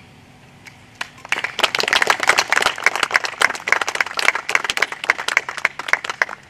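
A small seated audience applauding. The clapping starts about a second in, quickly becomes dense and thins out near the end.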